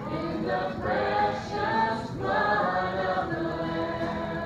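Congregation singing a hymn together, led by a woman's voice over acoustic guitar.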